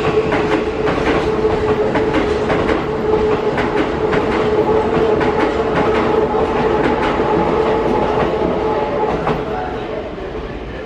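Toei 5500 series electric train pulling out, its wheels clacking over rail joints and points in an irregular run of sharp clicks, over a steady tone held at one pitch.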